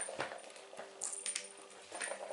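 A kitten batting at a toy hanging from a small sisal cat scratching post and climbing onto it: light metallic jingling among quick clicks and knocks, busiest about a second in.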